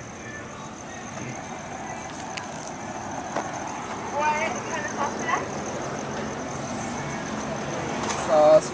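Steady low hum inside a parked car with a faint, steady high-pitched whine, and brief faint voices about halfway through.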